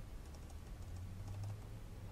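Faint computer keyboard typing: a scattered run of light key clicks as text is entered.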